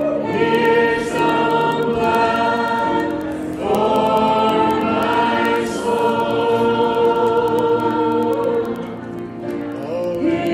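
A group of voices singing a slow gospel worship song together in long held notes, with short pauses between phrases about three and a half seconds in and again near the end.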